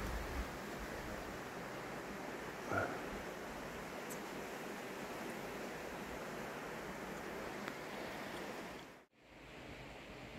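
Steady outdoor ambient hiss with no distinct source, a faint brief sound about three seconds in, and a short drop to silence about nine seconds in.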